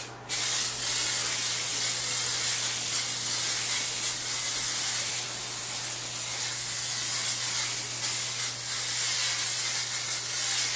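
Aerosol can of retouching varnish spraying a steady hiss as it is swept back and forth over a painted canvas, with a short break just at the start.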